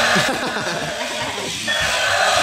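Battery-operated walking dinosaur toy playing its electronic sound effects through a small speaker as it walks, with a busy, warbling sound that steadies near the end.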